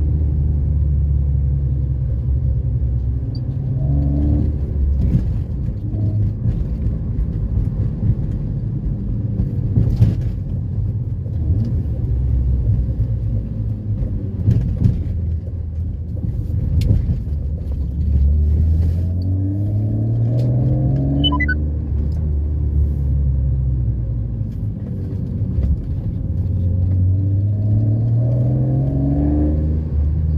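Straight-six engine and exhaust of a 1995 BMW E36 320i, heard from inside the cabin while cruising. A steady low drone rises in pitch three times as the car accelerates: near the start, in the second half and near the end.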